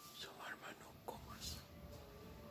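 Faint whispering close to the microphone, with a sharp click about a second in.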